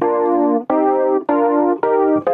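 Velvet virtual electric piano playing four short chords in a row, each held about half a second and cut off cleanly. Each chord is triggered from a single key by a scales-and-chords MIDI player with its chord mode switched on.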